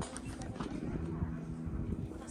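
Wind buffeting the microphone, an uneven low rumble, with a faint voice in the background.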